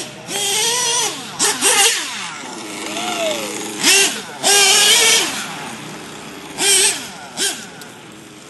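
Clockwork-modified Picco Boost .28 two-stroke nitro engine in an RC truck revving in several loud bursts, its pitch rising and falling with the throttle, while still on its first tanks of break-in fuel.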